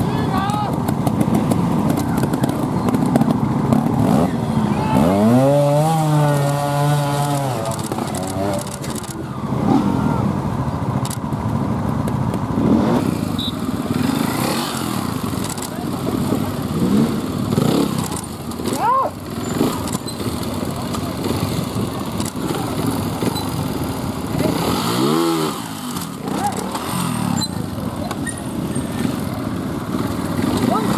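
Trials motorcycle engines revving up and dropping back several times as riders work through rocky obstacles, with voices around them.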